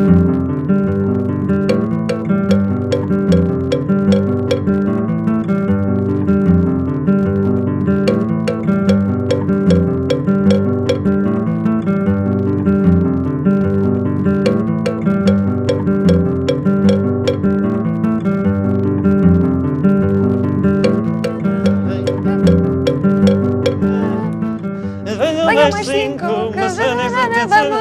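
Acoustic guitar strummed in a steady rhythm, with sharp metallic knocks of a cowbell struck with a drumstick by a dog. Voices come in about a second before the end.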